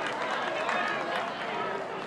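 A din of many voices at a rugby match: spectators and players shouting and calling over one another, with no single clear speaker.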